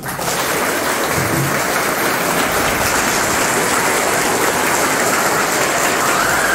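A large crowd of schoolchildren clapping: dense, even applause that breaks out at once and holds steady throughout.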